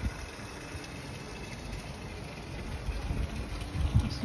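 Outdoor city background: a steady low rumble of distant traffic.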